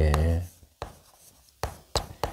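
Chalk striking and scraping on a chalkboard as characters are written: three short strokes with quiet between them.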